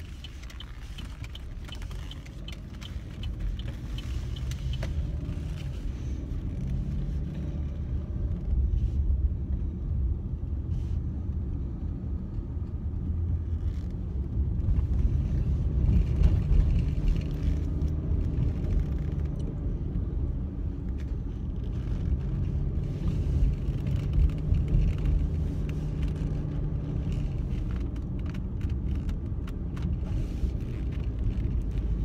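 Car engine and road rumble heard from inside the cabin while driving, a steady low drone that grows louder around the middle and eases off again. A few light clicks come near the start and near the end.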